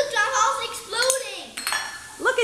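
A high, child-like voice without clear words, then a few light metallic clinks near the end as a small stainless steel pitcher and funnel are set down on a granite countertop.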